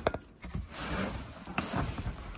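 Cardboard boxes scraping and rubbing against a shelf as they are pulled and shifted, with a knock just after the start and another about a second and a half in.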